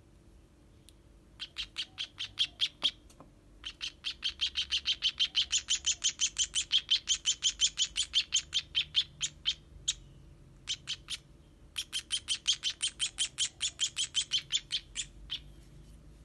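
Nestling sparrow (burung pipit) giving rapid, high-pitched food-begging chirps, several a second, while being hand-fed. The chirps come in three runs with short pauses, the longest about six seconds.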